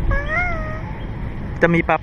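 A toddler's high, wordless vocalisation: a short rising call that wavers in pitch and stops before one second in, over a low background rumble.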